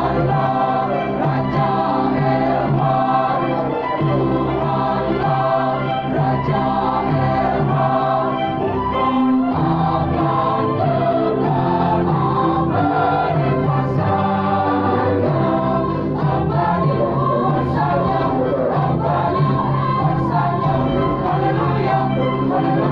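A large mixed church choir of women and men singing a hymn together in long held chords.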